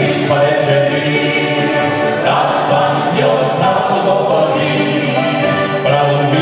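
Male vocal group singing a Slovenian song in several-part harmony, the voices held and sustained without a break.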